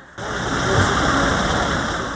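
A tow truck's engine running steadily with street noise. It starts suddenly just after the beginning.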